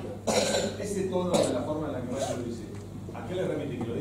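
Speech: a man talking in a room full of people.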